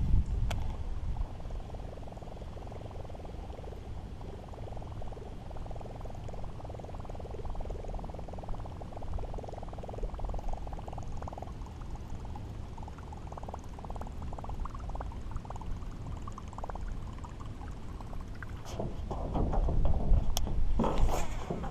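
Lake water lapping and gurgling against an aluminium john boat, with wind on the microphone, while a baitcasting reel is wound in during a topwater retrieve. It grows louder with sharper splashy sounds near the end.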